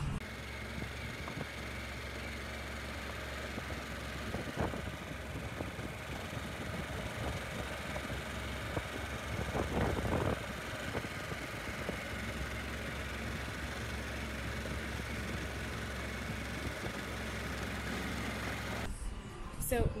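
Motorcycle running at steady cruising speed with wind and road noise, riding a gravel road, with two brief louder moments about five and ten seconds in. It cuts off just before the end.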